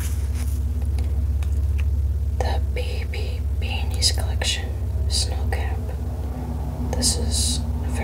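A woman whispering in short breathy phrases from about two and a half seconds in, over a steady low hum. A few faint clicks come earlier, as the cardboard swing tag is handled.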